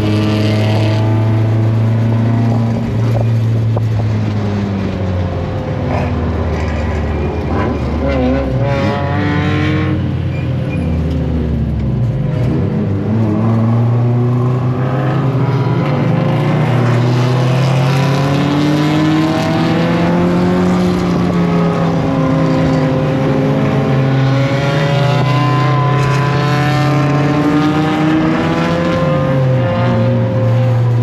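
1999 Mazda Miata Spec Miata race car's 1.8-litre four-cylinder engine heard from inside the stripped, caged cabin, running hard at racing speed. Its pitch climbs and falls over and over with gear changes and lifts, dropping low about twelve seconds in before pulling back up.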